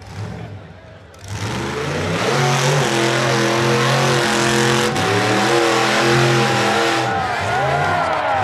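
Rock bouncer buggy's engine revving hard from about a second in, held at high revs with a brief dip around five seconds, as it climbs a rock face.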